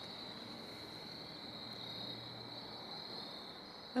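Crickets chirping in a faint, steady, high-pitched trill.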